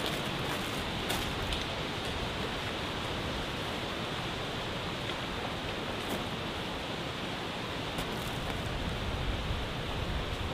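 Steady outdoor hiss of wind through trees, with a few faint crackles from dry leaf litter.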